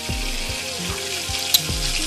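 Sliced onions and peppers sizzling in a pot, a steady hiss, with background music and a steady beat.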